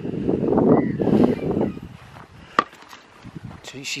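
Wind buffeting the microphone in gusts for the first couple of seconds, then easing off, with a single sharp click about two and a half seconds in.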